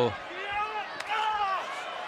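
A faint voice in the background over the sound of a wrestling arena, with one sharp smack about a second in.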